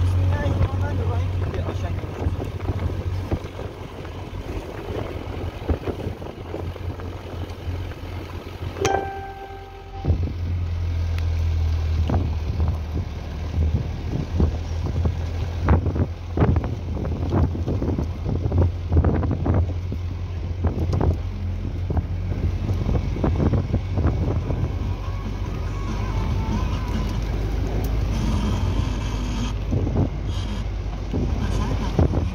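Wind buffeting the microphone: a steady low rumble broken by gusty crackles. About nine seconds in, the rumble drops for a moment and a brief held tone sounds.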